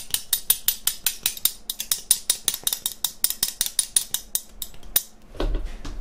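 Two metal spoons played as a rhythm instrument, rattled back and forth between the knee and the palm held above them, giving a fast, even run of bright clicks, about five or six a second. The playing stops shortly before the end.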